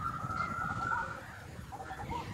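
Bird calls in the background: one steady, whistle-like note held for just over a second at the start, with a few short soft chirps scattered through.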